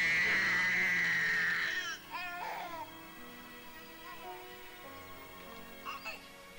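A woman crying out in labour in one long, high, wavering wail lasting about two seconds, then a baby crying briefly, over soft background music.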